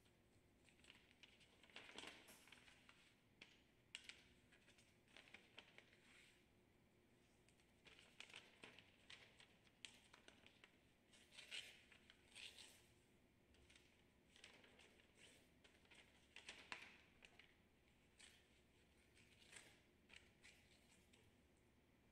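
Faint rustling and crinkling of sheets of paper being handled, folded and pressed flat on a lab bench, in short irregular bursts with small taps.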